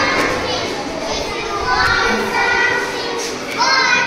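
Several young children's voices chanting a rhyme together.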